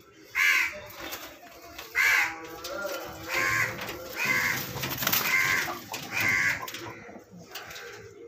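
A bird giving six loud, harsh calls, each short and about a second apart, over a faint low background.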